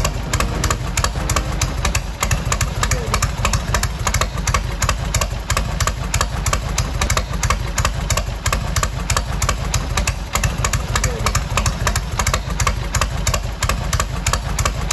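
A chopper's air-cooled V-twin motorcycle engine idling steadily, its firing pulses coming at an even, regular beat.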